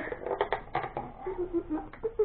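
Toy packaging of card and plastic being handled and pulled at: a quick, uneven run of clicks, taps and rustles.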